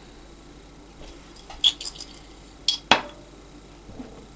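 A few light clicks and taps of small objects being handled and set down on a tabletop, in two small clusters, the sharpest near three seconds in.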